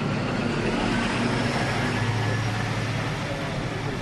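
Steady low hum of a vehicle engine running, over an even haze of road-like noise.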